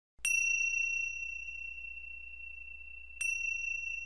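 A high, clear bell-like chime struck twice, about three seconds apart. Each strike rings on as one pure tone and fades slowly.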